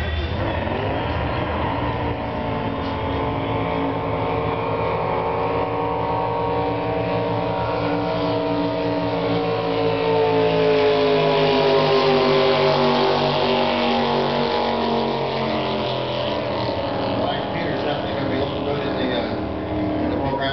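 Jet drag boat's engine at full throttle on a quarter-mile pass, a loud, steady drone of several tones. About halfway through it grows loudest and falls in pitch as the boat passes, then carries on as it runs away down the course.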